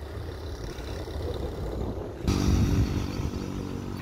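Low outdoor rumble, then, after an abrupt change a little past halfway, a steady engine hum from a motor vehicle running nearby.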